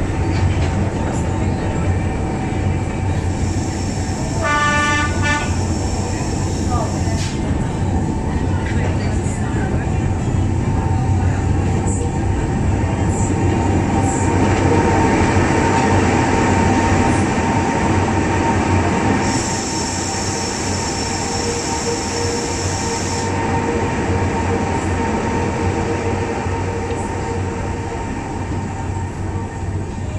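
Monte Generoso electric rack-railway car running uphill, heard from inside the passenger car with its windows open: a steady running noise and hum. It gets louder for a few seconds about midway while the train passes through a tunnel.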